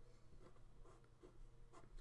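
Faint scratching of a pen drawing on paper, a few short strokes as a small square is sketched.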